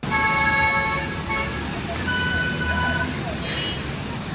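Urban road traffic on a wet street with vehicle horns: one horn sounds for about a second and a half, then a different-pitched horn about two seconds in, for about a second, over a steady wash of traffic noise.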